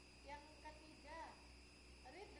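Faint, distant speech in a few short phrases over a steady low hum and hiss.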